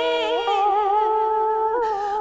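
Vietnamese song: a long held vocal note, sung or hummed with vibrato, over sustained accompaniment tones. About half a second in, the melody steps up to a new held note.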